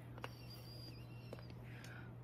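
Quiet room tone with a steady low hum, broken by two faint light clicks of small tools being handled on a hard work surface.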